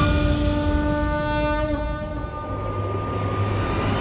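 Background music score: a sustained chord of held tones. It thins out about halfway through, leaving a low drone.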